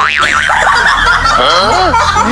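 Cartoon-style comedy sound effects: a quick wobbling boing at the start, then several rising-and-falling sliding tones, over background music.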